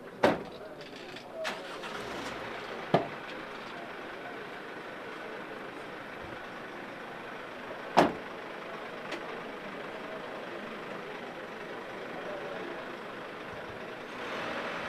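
Steady background noise broken by a few sharp knocks, the loudest about eight seconds in.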